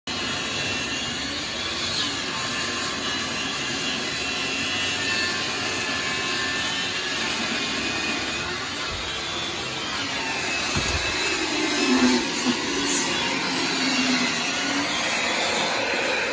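Bosch portable table saw running steadily while a piece of wood is fed through the blade, with a few louder knocks about three-quarters of the way through.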